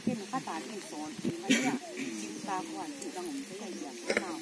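Speech: a woman's voice talking, with hissing 's' sounds, in a language the recogniser does not follow.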